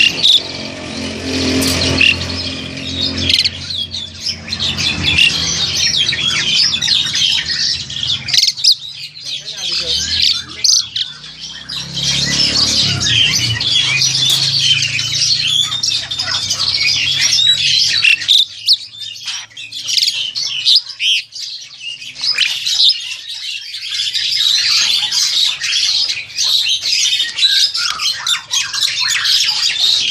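A group of captive black-collared starlings calling without pause, a dense chatter of chirps and harsh squawks.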